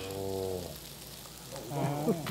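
A man's drawn-out "ooh" of admiration, held on one low, steady pitch for under a second, then a quieter pause before talking resumes near the end.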